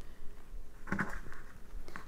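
Faint rustling of cotton fabric and bias tape being folded and handled, with a brief soft sound about a second in.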